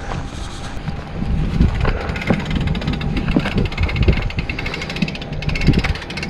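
Wind rumbling on the camera microphone, with footsteps on loose gravel as uneven knocks and crunches.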